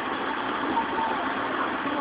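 Steady, even background noise with no distinct impacts or shots: street ambience on the audio of a TV news report.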